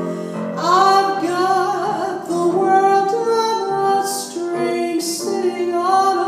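A woman singing a jazz standard into a microphone with grand piano accompaniment, the melody gliding and held over sustained piano chords.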